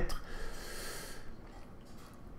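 A man's audible breath in a pause between sentences: a soft hiss that fades out over about a second.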